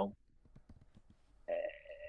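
Mostly a quiet pause in a conversation heard over a video call. Near the end comes a short, drawn-out croaky vocal sound of about half a second.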